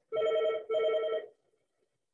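A phone ringtone signalling an incoming call: two short electronic rings of steady tones, each about half a second long, one right after the other.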